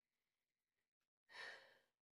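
A person's short sigh, one breathy exhale about a second and a half in, against otherwise near silence.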